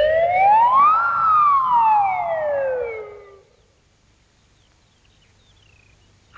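A cartoon sound effect: one whistle-like tone slides smoothly up in pitch for about a second, then slides back down and dies away about three and a half seconds in. It accompanies Mr Impossible flipping over onto his head.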